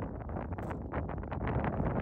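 Wind buffeting the microphone in uneven gusts, over a low steady rumble from a moving vehicle.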